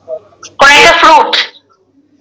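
Speech only: a single short utterance in one voice, about a second long, heard over a video call.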